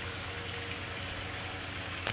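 Steady outdoor background noise: an even hiss with a faint low hum underneath, and no distinct events.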